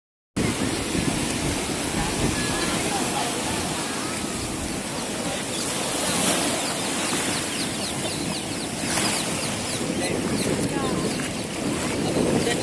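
Ocean surf washing in around people standing in the shallows: a steady rush of water that swells twice as waves break. Voices of several people talking can be heard faintly over it.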